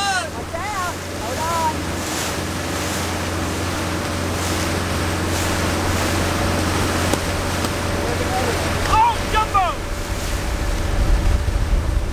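Boat outboard motor running steadily at speed, with water rushing in the churning wake and wind buffeting the microphone. Brief shouts cut through near the start and again around nine seconds in.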